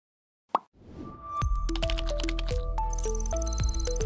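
A single short, sharp hit about half a second in, then a television station's outro jingle from about a second in: electronic music with quick stepping melody notes over a heavy bass.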